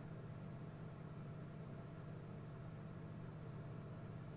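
Steady low hum with a faint, even hiss and no speech: background noise of the call's audio line.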